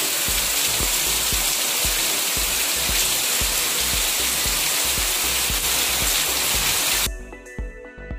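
Heavy rain pouring down, a dense steady hiss, over background music with a steady beat. About seven seconds in the rain sound cuts off suddenly, leaving only the music.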